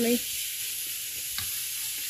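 Food frying in a pan on the stove, sizzling with a steady hiss. About one and a half seconds in there is one sharp tap of a knife on a wooden cutting board.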